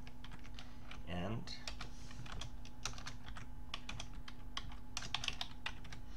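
Computer keyboard typing: a quick, irregular run of key clicks that lasts throughout.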